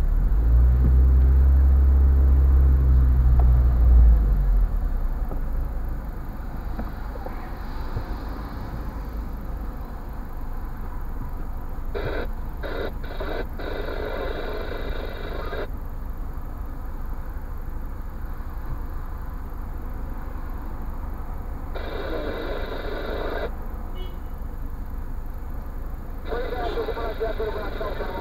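A car's engine heard from inside its cabin, loud and low for the first four seconds or so, then settling to a steady low idle. Short stretches of voices come in around the middle and near the end.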